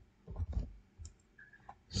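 A few soft clicks of computer keyboard typing and a mouse click.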